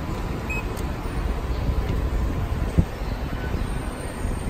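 Steady low rumble of station background noise, with a single short knock near the end.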